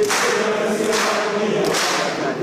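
A group of people singing together, many voices holding long notes in unison.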